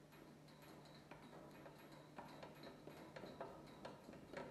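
Near silence: faint, irregular clicks over a low steady hum, the clicks coming a little more often and louder in the second half.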